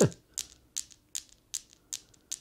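Balls of an illuminating Newton's cradle, each with built-in LEDs, clicking against each other as the end balls swing: five sharp clicks, evenly spaced about 0.4 s apart.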